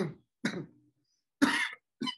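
A person clearing their throat in three short, rough bursts, the first at the start and the others about half a second and a second and a half in, the last the loudest.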